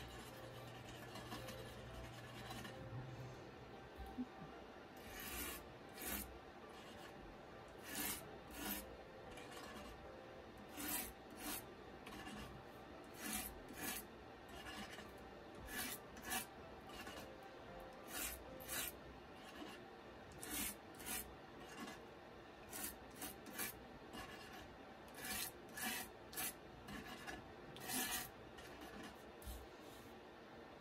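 A stiff-bristled brush scraping across cardstock in short, separate strokes, roughly one a second, dragging ink down the paper to draw wood-grain lines.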